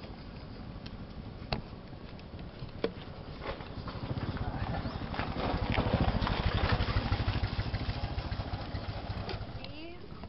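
A few sharp clicks and knocks of a plastic bottle being handled, then a low engine rumble that swells about four seconds in and fades near the end, as of a motor vehicle passing.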